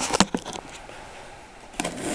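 Handling knocks and clicks on a wooden tabletop from a camera and a plastic deli container: several sharp clicks in the first half second, a quiet lull, then more handling clicks near the end as a hand reaches for the container.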